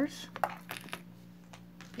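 Beads of a beaded bracelet clicking and clinking together as it is handled, several sharp clicks in the first second, then quieter.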